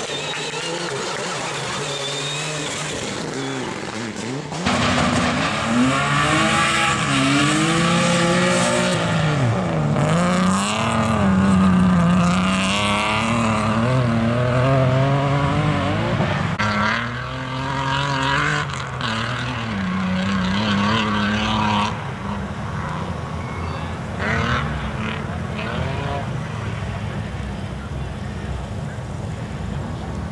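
BMW E30 rally car's engine revving hard, its pitch climbing and dropping again and again as the car is driven flat out. The engine is loud from about five seconds in.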